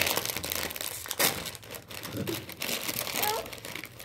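Foil potato-chip bag crinkling and rustling as a hand rummages in it and pulls out chips, loudest about a second in.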